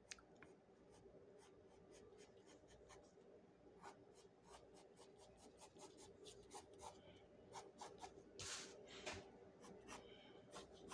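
Pencil scratching on paper in many short, quick strokes as hair is sketched from the roots outward. The strokes are faint and grow more frequent toward the end, with one longer, louder stroke about eight and a half seconds in.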